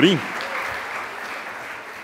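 Large audience applauding, the clapping slowly dying away.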